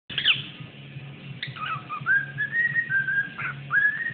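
Cockatiel whistling a song: a quick sweeping chirp at the start, then a string of clear whistled notes, some held steady and some sliding up in pitch.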